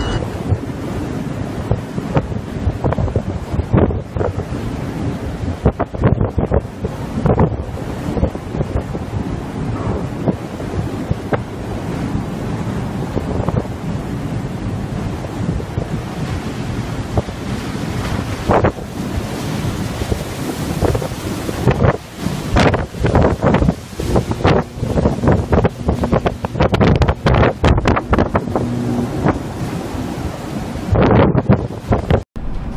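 Storm wind buffeting the microphone over the rush of heavy seas around a container ship. Irregular gusts hit the microphone throughout and come thicker and harder in the last third.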